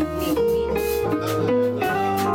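Live band playing: a hollow-body archtop electric guitar to the fore over upright bass, drums with cymbal strokes, and an electric keyboard.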